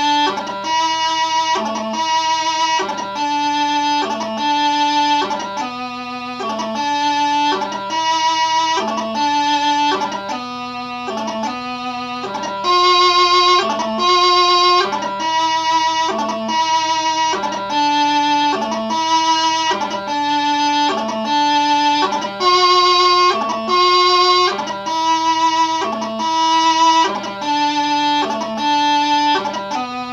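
Bagpipe practice chanter playing a slow piobaireachd melody with no drones: a single reedy line of steady held notes, each change of note marked by short grace notes.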